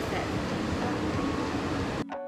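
Steady rumble and hiss inside a Walt Disney World monorail car, Monorail Gold, heard from a passenger seat.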